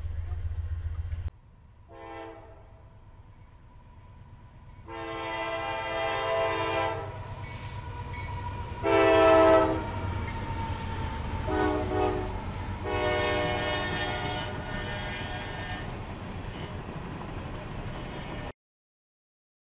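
CSX freight diesel locomotives' air horn blowing as the train rolls through a grade crossing. It sounds five blasts: a faint short one, then two long, a short and a long, the grade-crossing signal pattern, over the steady rumble of the passing train. For about the first second a passing Amtrak passenger car rumbles, cut off abruptly.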